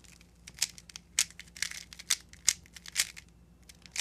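Plastic layers of a 3x3 speedcube clicking and clacking as they are turned quickly, a fast irregular run of sharp clicks while an A-perm algorithm is executed.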